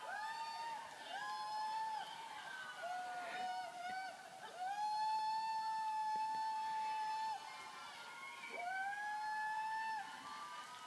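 A man singing a slow melody in a very high-pitched voice, holding several long notes that each slide up at the start; the longest is held for nearly three seconds, starting near the middle. It is heard through a television's speaker.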